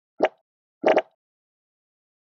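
Logo-animation sound effect: two short popping sounds, the second a quick double pop, about two-thirds of a second apart.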